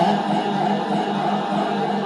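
Devotional naat singing: a man's voice holding long, steady notes with little change in pitch, in the unaccompanied chanting style of a naat.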